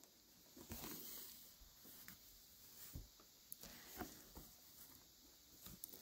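Near silence, broken by faint soft rustles of quilt fabric and thread being handled as a binding is hand-stitched with a ladder stitch.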